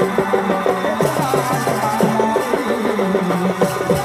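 Live folk dance music: a mandar, the two-headed clay barrel drum, beats a steady rhythm under a sustained melody that steps between notes.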